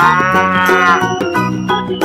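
A cow mooing once, a call about a second long that rises and falls in pitch, over background music that plays on after it.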